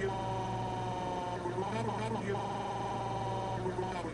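Synthesized electronic tones played through laptop speakers: a steady held chord for about a second and a half, a short voice-like warble in the middle, then a held chord with a wavering upper note that stops just before the end.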